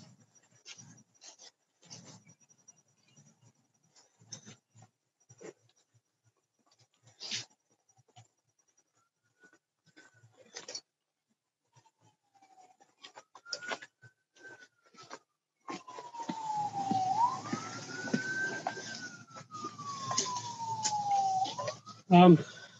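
An emergency vehicle siren wailing, its pitch slowly rising and falling in long sweeps. It comes in faintly about halfway through and grows louder over the last several seconds. Before it there are only scattered faint clicks and knocks.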